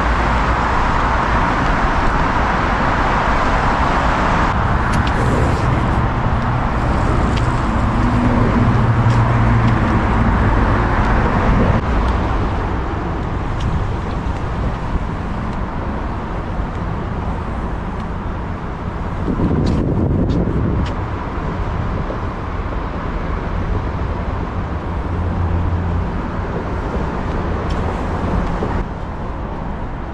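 Steady road traffic noise from nearby city roads, with low engine hum coming and going and a louder vehicle passing about twenty seconds in.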